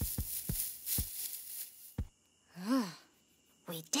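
Plucked, tiptoeing string music in single notes that stops about two seconds in. After a hush comes one short, sleepy murmur whose pitch rises and falls, from a sleeping cartoon dinosaur.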